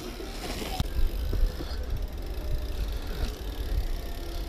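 Mountain bike riding over a dirt trail: tyre noise and rattling of the bike, with a steady low wind rumble on the microphone. A burst of hiss comes in the first second.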